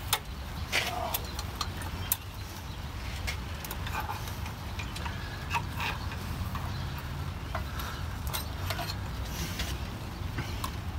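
Scattered light clicks and knocks of a six-cylinder engine's distributor being wiggled loose and lifted straight up out of the block by hand, its cap and plug wires rattling, over a steady low background hum.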